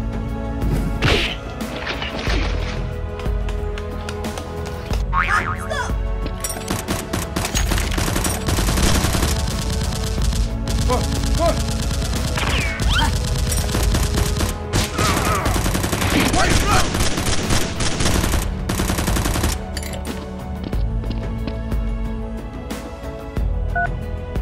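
Bursts of rapid machine-gun-style gunfire over background music, heaviest about eight to ten seconds in and again from about fifteen to nineteen seconds, with brief shouts in between.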